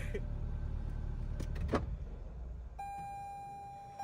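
Low steady rumble inside a parked car's cabin with two soft clicks, then a steady electronic tone with several overtones starts near the end and holds.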